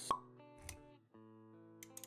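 Intro music with sound effects: a sharp pop just after the start, a short low thud about two-thirds of a second in, then held musical notes with a few clicks near the end.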